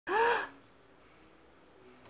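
A person's short gasp-like vocal exclamation, an "ooh" that rises and falls in pitch and lasts under half a second.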